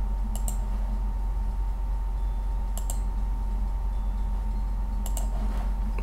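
Computer mouse clicking three times, spaced about two seconds apart, each click a quick press-and-release double tick, over a steady low electrical hum.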